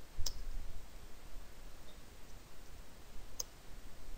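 Two sharp clicks about three seconds apart, with a few faint ticks between them: clicks from a computer mouse and keyboard while code is being edited.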